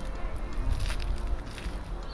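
Low rumble of wind on the microphone, with a few crackles and rustles as gloved hands press a shallot into loose soil.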